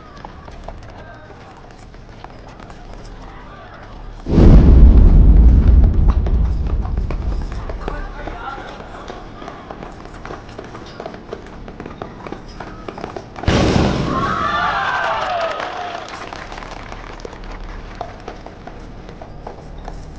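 Film sound of a troop of horses riding, hooves knocking. About four seconds in there is a sudden deep boom that fades slowly, and a second loud hit about thirteen seconds in carries wavering pitched calls.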